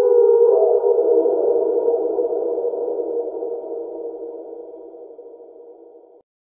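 Dark, eerie synthesizer drone: a cluster of steady sustained tones that swells slightly in the first second, then fades out slowly and stops.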